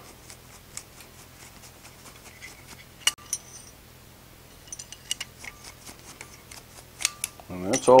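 Light scattered metal clicks and ticks as tongs holding a small forged leaf tap and scrape on the anvil face while paste wax is rubbed onto the hot leaf; the sharpest click comes about three seconds in.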